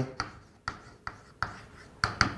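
Chalk writing on a blackboard: a few short, sharp taps and scrapes about half a second apart as the letters are written.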